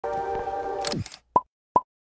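Background music that stops about a second in with a quick falling pitch glide, followed by two short pop sound effects a little under half a second apart.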